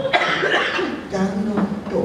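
A person coughs sharply once just after the start, then talks.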